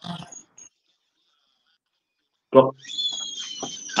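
Video-call audio cutting out for about two seconds, then a man's voice breaking back in with a high, slowly falling whine over it, on a connection with Wi-Fi trouble.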